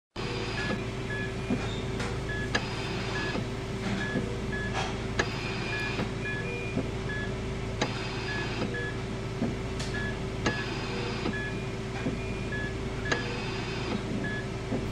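Patient heart monitor beeping: short high beeps at one pitch repeat over a steady electrical hum. A soft hiss swells and fades about every two and a half seconds.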